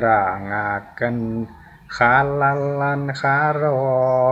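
A man's voice chanting a Javanese devotional verse (syair) to a slow melody in long held notes, with a short pause between phrases in the middle.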